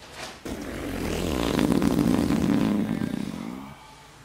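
A long, low fart lasting about three seconds, swelling and then trailing off.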